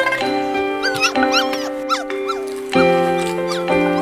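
Background music with sustained notes, over which a dog whines in a few short rising-and-falling cries, mostly between about one and two seconds in.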